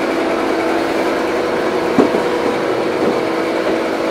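Steady machine hum with two even tones, broken by a single short knock about two seconds in.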